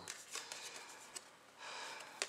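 Faint rustling and light clicks of hockey trading cards being slid and flipped over in the hands, with a short swish of card on card near the end.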